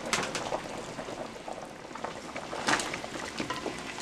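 Pepper-and-vegetable sauce with crabs bubbling at a boil in a metal pot, with two light clicks.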